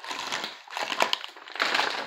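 Plastic packaging crinkling and crackling as it is handled, in two bursts with a short pause between.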